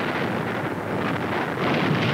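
Continuous rushing roar of depth-charge blasts and churning sea water, swelling louder about a second and a half in.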